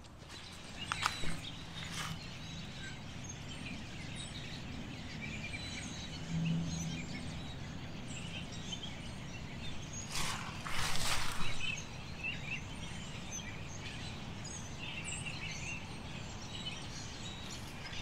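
Many wild birds calling and chirping at once in winter woodland, a scattered chorus of short calls. A brief rustling noise breaks in about ten seconds in.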